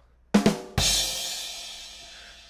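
Comedy drum sting (ba-dum-tss) marking a joke's punchline: two quick drum hits, then a kick drum and cymbal crash that rings and slowly fades.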